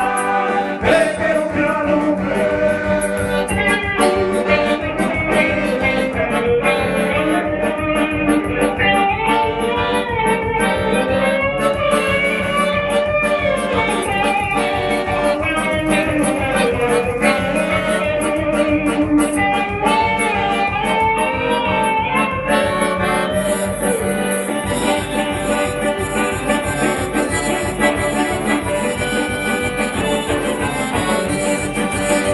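Live band playing upbeat Latin-style music: a melodic lead line over a steady drum beat, with keyboard.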